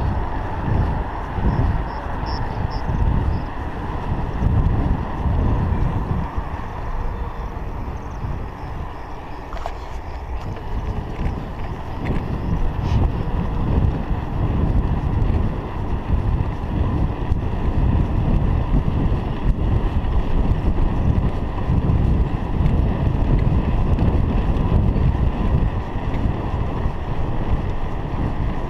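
Wind buffeting the microphone of a chest-mounted GoPro Hero 3 while riding a bicycle along a paved road: a loud, gusty low rumble that rises and falls throughout, with a fainter steady hiss above it.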